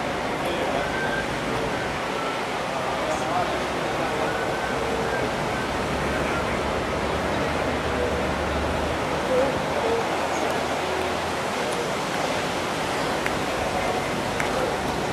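Steady hiss of outdoor background noise on a camcorder microphone, with faint, indistinct voices of people talking. A low rumble swells for a few seconds in the middle.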